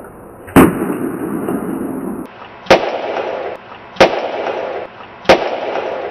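An egg blowing up: a sharp bang repeated four times, each followed by about a second of noise.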